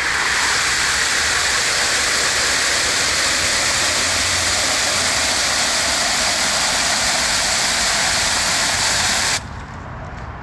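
Garden hose spray nozzle jetting water into a small metal bucket: a loud, steady hiss and splash that cuts off suddenly about nine and a half seconds in.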